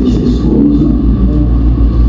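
A man's voice preaching over a church sound system, boomy and hard to make out, over a heavy low rumble.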